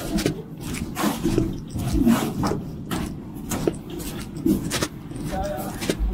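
Footsteps crunching on a gritted, snow-dusted sidewalk as several people walk, about two steps a second, with faint voices near the end.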